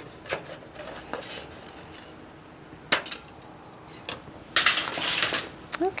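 Scissors snipping thin metal tooling foil, a few sharp separate clicks, followed about four and a half seconds in by a second of crinkling as the foil is handled.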